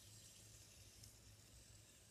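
Near silence: room tone with a faint steady hiss and low hum.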